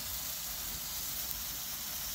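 Handheld gun-shaped firework fountain burning with a steady hiss as it sprays gold sparks.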